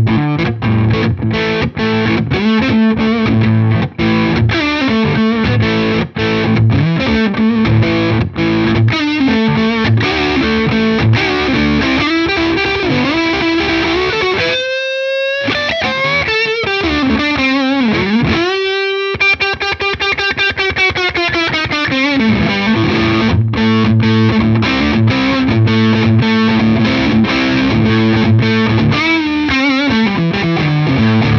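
Tokai Love Rock LS128, a Les Paul-style electric guitar with PAF-style humbuckers, played overdriven through a Hamstead valve combo. It plays chugging rhythmic chords; about halfway through, a few long lead notes are bent up and down in pitch, then the chords return.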